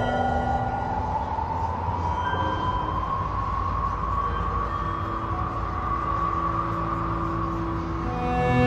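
A passing train running over a steady rumble, its whine slowly rising in pitch, as when the train picks up speed.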